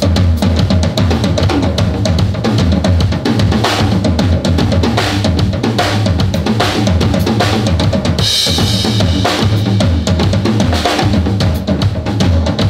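Live blues band playing an instrumental passage without vocals: drum kit with kick and snare keeping the beat, under electric bass and electric guitar.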